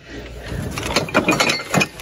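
Ceramic and glass housewares knocking and clinking together as a hand rummages through a plastic bin and lifts out a ceramic warmer: a run of quick, sharp clicks and knocks.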